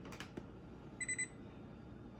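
Frigidaire refrigerator's electronic control panel giving a short, high-pitched beep in a few quick pulses about a second in as its buttons are pressed and held to change a setting, after a few faint clicks near the start.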